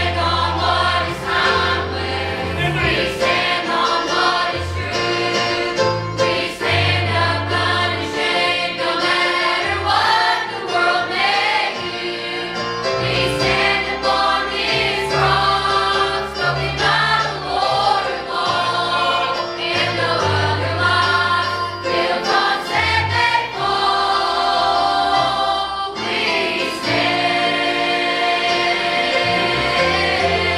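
A church choir of adults and children singing a gospel song in unison over instrumental accompaniment with a steady, sustained bass line.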